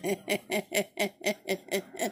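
A woman laughing in a steady run of short pulses, about four a second, each rising and falling in pitch.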